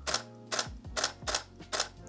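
DSLR shutter firing five times in a steady run, about two and a half clicks a second: single frames of a focus stack, each released by hand.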